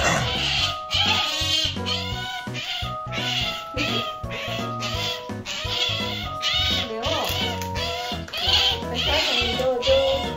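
Asian small-clawed otter making repeated short, high-pitched begging squeaks, roughly one a second, over background music with steady stepped notes.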